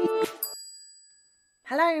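End of an intro jingle: a pitched tune over a quick ticking beat stops a quarter second in, and a bright chime rings out and fades away. A brief silence follows.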